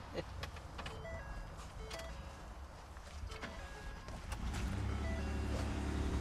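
A pickup truck's dashboard chimes beep a few short times as the key is turned, with a couple of clicks. About four and a half seconds in, a low steady rumble comes up as the truck starts.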